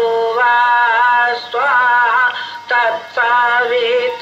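Devotional aarti singing: a single voice holding long, steady notes, with short breaks between phrases.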